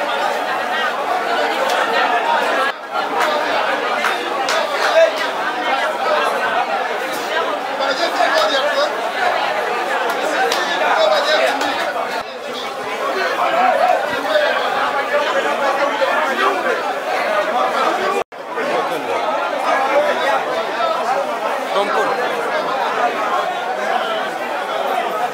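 Many people talking at once, a steady crowd babble in a busy indoor space. The sound cuts out briefly about three seconds in and again a little past eighteen seconds.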